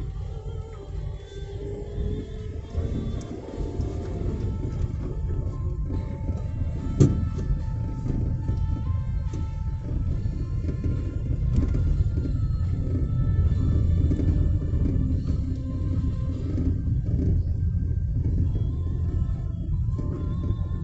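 Steady low rumble of a car driving, heard from inside the cabin, with faint music playing over it and one sharp knock about seven seconds in.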